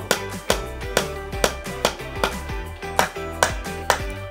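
Light hammer taps on a nail being driven into a wooden block, heard over background music with a steady beat.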